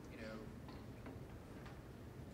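Meeting-room background: a steady low hum with a brief faint voice early on and a few light ticks scattered through.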